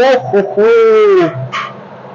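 A man's voice: a short "o" at the start, then a drawn-out exclamation whose pitch rises and falls, lasting about two-thirds of a second.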